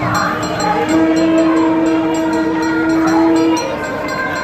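Temple procession music: a nadaswaram holds one long, steady reed note, breaking off shortly before the end, over repeated drum strokes and the noise of a crowd.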